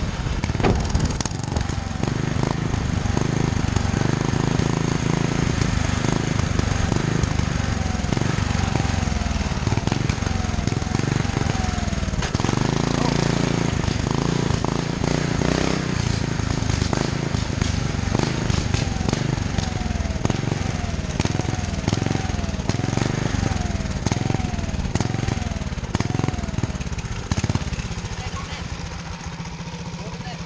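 Small single-cylinder engine of a motorized go bike running under throttle on the move, its pitch rising and falling, with wind on the microphone and sharp exhaust pops throughout. The popping is backfiring, which the rider puts down to a carburetor that needs adjusting. The engine eases off near the end as the bike slows.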